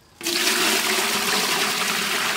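Water poured from a bucket into a large empty aluminium pot, starting suddenly a moment in and running on as a steady splashing rush against the metal.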